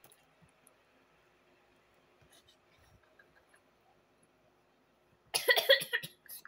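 Several seconds of near quiet with a few faint soft ticks close to the microphone, then about five seconds in a sudden loud burst of girls' laughter.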